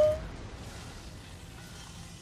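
The tail of a man's drawn-out "ooh" right at the start, then faint music from the anime's soundtrack playing quietly underneath, with a few soft held notes in the second half.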